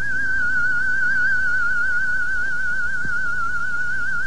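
A single high note held throughout with a fast, even vibrato, over a faint low hum.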